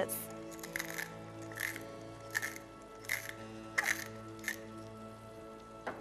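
Tall wooden salt mill turned by hand over a frying pan: about seven short grinding turns at an even pace, roughly three every two seconds, stopping a little past halfway, over steady background music.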